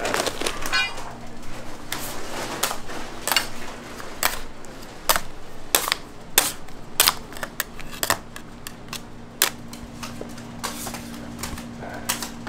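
Irregular sharp clicks and knocks, about one or two a second, from a metal scraper working a batch of hot red hard candy on a steel cooling table, with a steady low hum underneath from about two seconds in.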